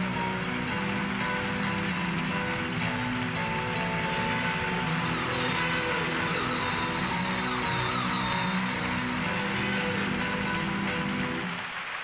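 Live audience applauding after a song, a dense even clatter of clapping, with a keyboard holding slow sustained chords underneath. Both fade out near the end.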